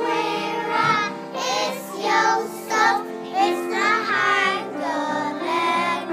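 A group of young children singing a song together over a steady instrumental accompaniment of held notes.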